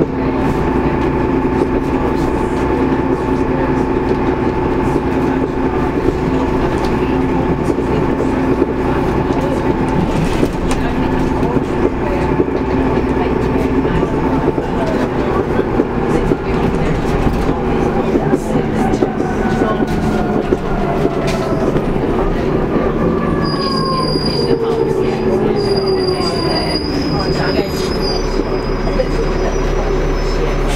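Cabin sound of a Transbus Trident double-decker bus on the move: a steady engine and drivetrain drone with a whine. In the second half the whine falls in pitch as the bus slows, and two high brake squeals come near the end.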